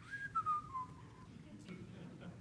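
A man whistling a short run of falling notes, about a second long, mimicking a shepherd whistling for his sheep.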